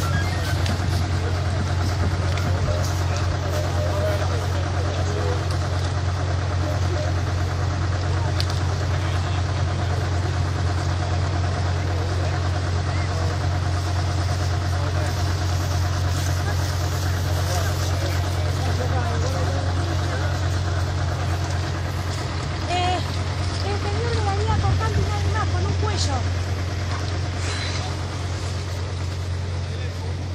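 A vehicle engine idling with a steady low rumble, under many people talking and calling out at once.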